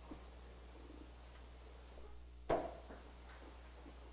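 Steady low hum from a microphone and PA system during a pause in the talk, with one short, sharp sound about two and a half seconds in.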